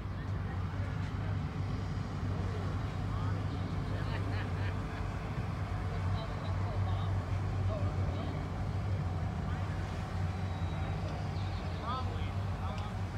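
A vehicle engine idling steadily, a constant low hum, with faint voices talking in the background.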